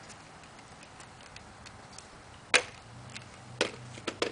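Fuzion scooter clacking on asphalt as it is tipped and set down: one sharp loud clack a little past halfway, a smaller one about a second later, and a few faint ticks between.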